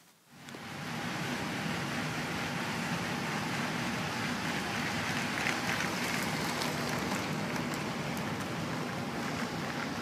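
A LEGO train running along its plastic track, a steady running noise that fades in at the start and holds even throughout.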